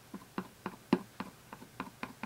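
A clear acrylic-block rubber stamp tapped repeatedly onto an ink pad to ink it, making light clicks about four times a second.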